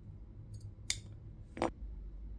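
Two sharp plastic clicks about three-quarters of a second apart, with faint ticks around them, as a small black plastic folding phone stand is handled and pressed into its blister packaging.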